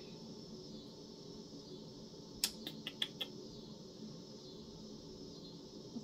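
A short run of about five faint clicks of a metal chain necklace and its clasp being worked behind the neck, a little before the middle, over quiet room tone.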